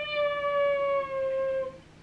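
One long held vocal note lasting nearly two seconds, sliding slightly down in pitch before it stops.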